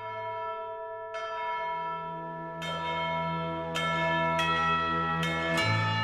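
Outro sting of chiming bells: about seven bell strikes one after another, each ringing on and overlapping the last, over a steady low hum.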